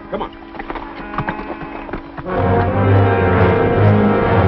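Horse hooves clopping in a run of sharp knocks over a held low note. About two seconds in, the film's music score comes in loudly and takes over.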